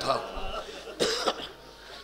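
A man's voice finishing a word, then a single short cough about a second in, followed by a quieter pause.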